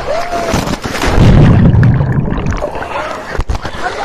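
Water-slide rider's short cry as he comes off the slide, then a loud deep rush and splash of water about a second in as he plunges into the pool, with water sloshing as it dies away.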